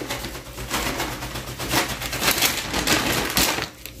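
Dry shoestring potato sticks crackling and rustling as they are shaken out of a plastic bag and spread by hand, a dense run of tiny crisp clicks.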